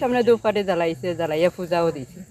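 A woman's voice speaking in a strained, agitated tone.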